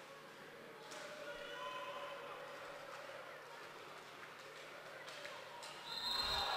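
Faint arena sound of a roller hockey game in play: distant voices and the knocks of sticks, ball and skates on the rink, with one sharper knock about a second in.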